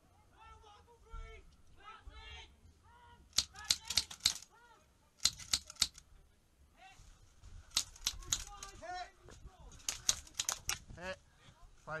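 Airsoft guns firing in four short rapid bursts of sharp cracks, several shots in each burst, with voices calling in the background.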